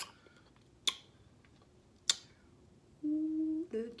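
A woman eating, with three sharp clicks about a second apart, then a short hummed "mm" of enjoyment near the end.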